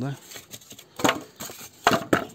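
Sheets and rings of extruded polystyrene foam insulation being handled on a wooden table: a few short, sharp knocks and scrapes, about one a second.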